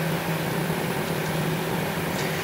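Steady in-flight cockpit noise of a Hawker 800XP business jet on approach: an even rush of air with a constant low hum.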